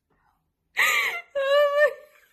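A toddler's voice: two loud, high-pitched wordless cries starting about three-quarters of a second in, the first bending in pitch, the second held steady at one pitch.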